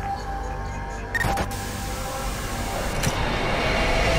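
Animated logo sting: sound-design effects over a sustained music bed. There is a short sharp sweep about a second in, followed by a thin, steady high tone, and a click near three seconds.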